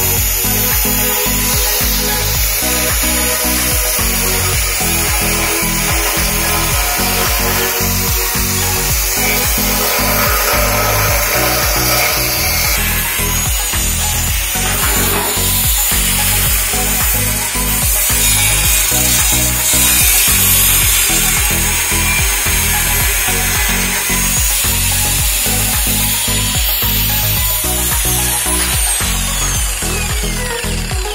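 Angle grinder cutting into a steel beer keg: a steady high whine with a grinding hiss as the disc bites the metal, the whine falling away near the end as the grinder winds down.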